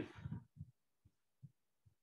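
Near silence with a few faint, soft low thuds about every half second, after the tail of a spoken word at the start.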